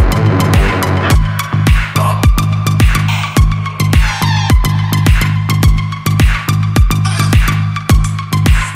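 Midtempo dark techno / EBM in a DJ mix: a drum-machine kick on every beat, nearly two a second, over a steady synth bass drone. About a second in, the busier mid-range layer drops out as the mix crosses into the next track, and a faint falling sweep passes high up near the middle.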